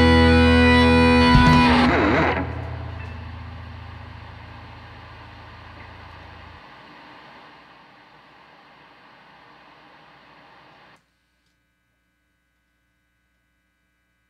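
A rock band ends a song on a loud held chord of distorted electric guitars and bass, with a drum hit just before the band stops about two seconds in. The guitar amps and effects then ring out in a fading wash of sound for several seconds, which cuts off abruptly to silence about three seconds before the end.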